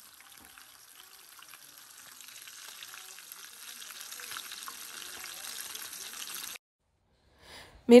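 Whole tilapia deep-frying in a pan of hot oil: a steady sizzle, faint at first and growing louder, that cuts off suddenly about six and a half seconds in.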